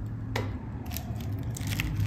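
A soft knock on the table, then a soap bar's printed wrapper crinkling in the hands as it is picked up. The crinkling is a run of fine crackles that grows near the end.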